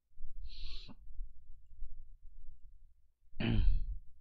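A man's breath noises at a close microphone: a short hissing breath about half a second in, then a low voiced exhale near the end, over a faint low rumble.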